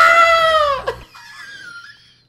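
A man's loud, high-pitched shriek of laughter: one long cry lasting about a second that rises and falls in pitch, followed by fainter high squeaks.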